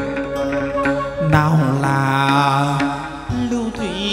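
Live chầu văn ritual music: a singer holds long, wavering notes without clear words over a plucked-lute accompaniment.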